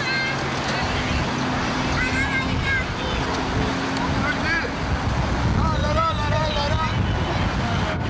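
A small car's engine idling, its low hum fading out after about three seconds. People's voices call out around it, with a high child-like voice about six seconds in, over steady outdoor background noise.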